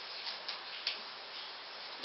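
A few faint clicks and light taps of playing-card stock as tarot cards are drawn and handled, over a low steady hiss.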